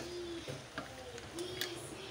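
Light clicks of a wooden spatula stirring mussels, shrimp and vegetables in a pan, with two faint, short low tones, one at the start and one about a second and a half in.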